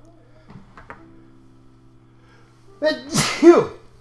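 A man sneezes once, loudly, about three seconds in, with a short voiced 'ah' intake just before the burst.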